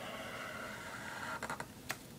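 Felt-tip marker drawing on spiral-notebook paper: a steady thin scratchy sound of the strokes, then a few quick sharp clicks near the end.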